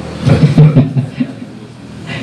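A man's voice talking for about a second, then a quieter lull.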